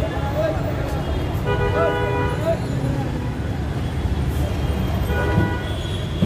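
Busy street traffic: a steady rumble of engines with vehicle horns sounding about a second and a half in and again near the end, over background voices.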